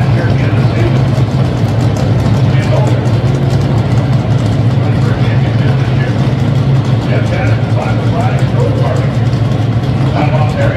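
Drag racing cars' engines idling at the starting line: a loud, steady low drone that holds without revving.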